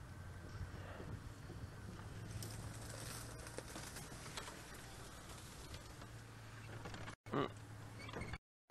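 Open safari vehicle's engine running steadily at low revs as it creeps along a sandy track, with scattered faint crackles and crunches under the tyres from about two to four and a half seconds in.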